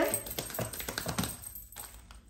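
Tarot cards being shuffled and handled: a quick run of light clicks and taps that thins out over the second half.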